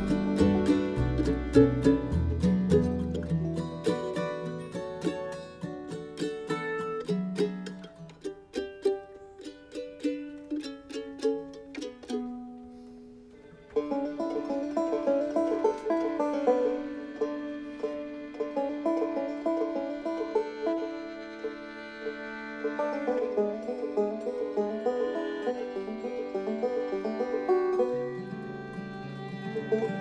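Acoustic bluegrass-style string band playing an instrumental passage on fiddle, guitar, banjo, mandolin and upright bass. It opens full with the bass, thins to sparse plucked notes that fade almost out about twelve seconds in, then the band comes back in suddenly near fourteen seconds with busy banjo and mandolin picking, the bass rejoining near the end.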